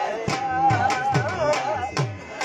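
Punjabi dhol playing a luddi beat with strokes about twice a second, under a wavering high melody line.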